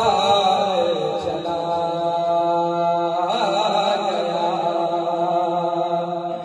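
A man singing a kalam, a devotional Urdu poem, into a microphone: a long held note in the middle, with wavering ornamented runs at the start and about three seconds in.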